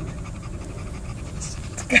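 A 10-month-old Maltese puppy panting steadily, tired out. A woman's voice comes in near the end.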